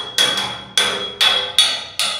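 A quick run of sharp metallic strikes, two to three a second, each ringing briefly with a high tone that dies away.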